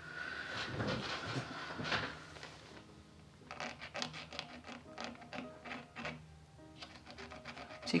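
A fine pointed pick scratching across thick rag watercolour paper in a run of short, quick strokes, scraping the paint back to lighten a horizon line. Soft background music plays underneath.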